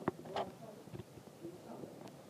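Faint, indistinct voice in the background with a few soft clicks.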